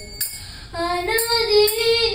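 A girl singing a devotional song into a microphone: after a brief pause between phrases, a held note begins just under a second in and steps up in pitch.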